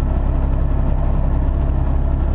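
Semi truck's diesel engine and tyre noise heard from inside the cab while cruising: a steady low drone at an even level.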